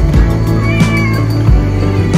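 A domestic cat meowing, one drawn-out meow about midway, over background music with a steady beat.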